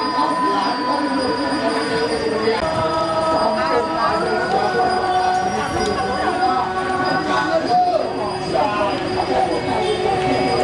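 Several voices singing long, held notes at different pitches that overlap and step to new pitches every second or two, over the steady murmur of a gathering.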